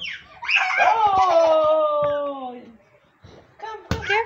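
A long, drawn-out vocal cry of about two seconds, slowly falling in pitch, during a peekaboo game. It fades to quiet, and a single sharp knock comes just before the end.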